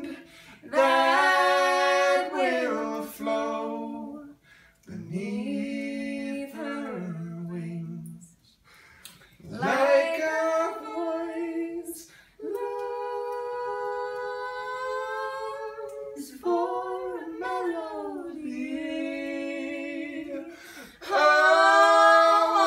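A man and a woman singing a slow duet together, in phrases separated by short pauses, with one long note held for about three seconds in the middle.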